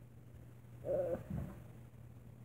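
A brief voice-like sound about a second in, trailing into a lower, falling sound, over a steady low hum.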